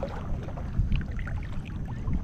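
Wind rumbling on the microphone over choppy water lapping.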